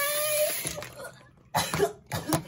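Bathroom tap running into a sink, a steady hiss that is shut off about half a second in. About a second and a half in, a person coughs in short bursts.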